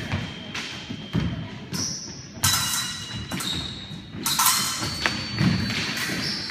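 Épée fencers' feet thumping and stamping on a wooden floor during a bout, with several sharp metallic clashes of the blades that ring briefly; the two loudest come about two and a half and four seconds in.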